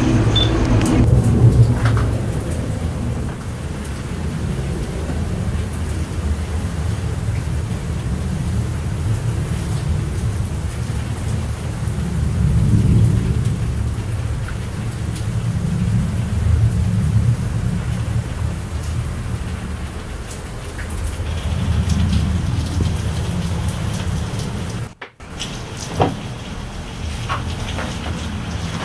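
Rain falling, with gusts of wind rumbling low on the microphone that swell and ease every few seconds. The sound briefly drops out near the end, followed by a few sharp clicks.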